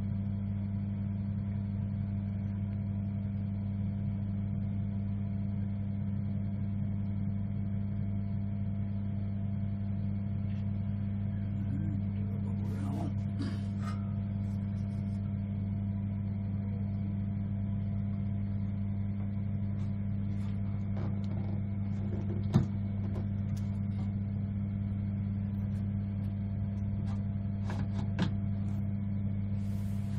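Steady low electrical hum of workshop machinery, with light knocks and handling sounds at the edge of a water dip tank from about halfway in; the sharpest knock comes about three-quarters of the way through.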